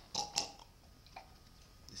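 Two or three short clicks in the first half second and a fainter one about a second in, from a hand tugging at the collar of a costume robe.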